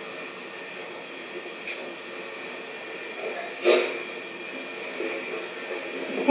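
A steady, even hiss of background noise, with one brief louder sound a little past halfway.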